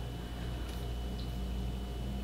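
Room tone: a steady low electrical hum with a thin faint whine above it, and a couple of faint soft ticks from small handling noise.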